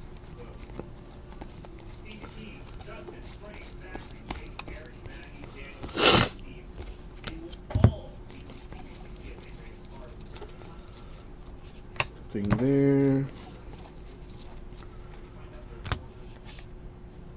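Basketball trading cards being flipped through by hand, a faint steady rustling with scattered soft clicks. There is a short, louder rush of noise about six seconds in, sharp card snaps near eight and twelve seconds, and a brief wordless hum from the person about twelve and a half seconds in.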